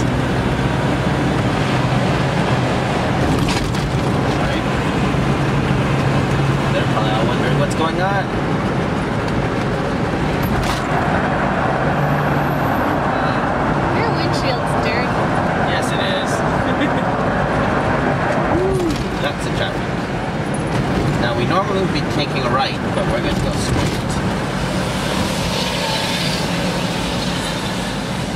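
Steady road and engine noise heard from inside a moving car's cabin, with a low hum under it.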